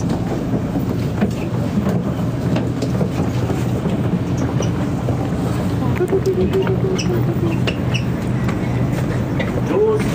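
Steady low hum and rumble inside a Sydney double-deck train carriage, with scattered light clicks and knocks from the phone being handled. A brief laugh comes near the end.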